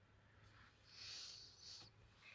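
Near silence: room tone in a parked car's cabin, with a faint soft hiss about a second in.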